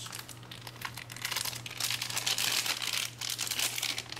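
Plastic accessory packaging crinkling and rustling as it is handled and opened, in quick irregular crackles that grow busier after about a second.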